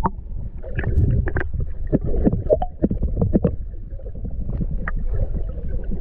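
Water sound heard from underwater through a camera's waterproof housing: a muffled low rumble of moving water, broken by many small irregular pops and clicks.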